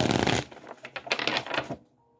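A deck of tarot cards being riffle-shuffled by hand: a dense fluttering riffle near the start, then a run of quick card clicks that stops shortly before the end.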